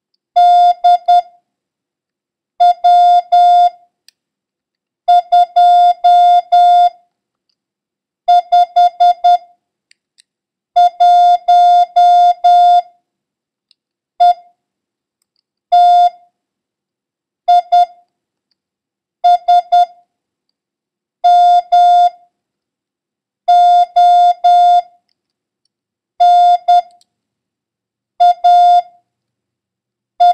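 Morse code sent as a steady beeping tone of about 700 Hz, one letter or number at a time, with a pause of a second or two between characters. It is a random run of letters and numbers for copying practice.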